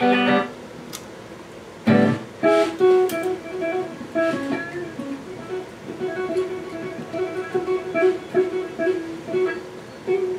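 Electric guitar played through an amplifier: a chord struck about two seconds in, then a loose run of short picked notes repeating mostly on one pitch, with a few higher notes.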